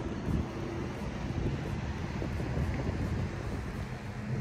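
Wind buffeting the microphone outdoors as a steady low rumble, with a faint constant low hum underneath.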